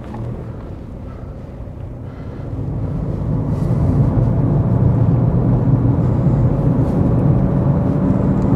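Car driving, a steady engine and road noise that grows louder between about two and four seconds in, then holds steady.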